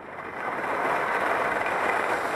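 Skis sliding and hissing over freshly groomed corduroy snow at speed. The rushing noise builds over the first half second, then holds steady.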